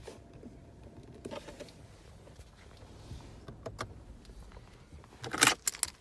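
Quiet handling noise at a car's centre console: a few soft clicks from a hand on the armrest, then a louder burst of rustling and clatter about five seconds in.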